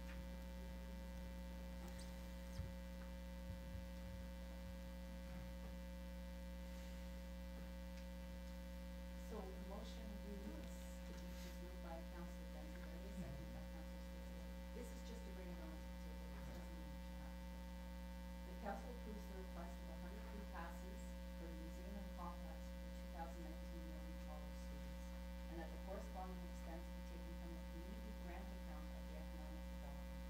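Steady electrical mains hum on the microphone feed, with faint, indistinct voices in the background from about nine seconds in.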